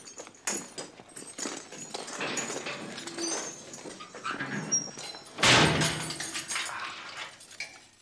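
Metal chains clinking and clanking in irregular strikes, with brief high metallic rings and a louder rough scraping noise about five and a half seconds in.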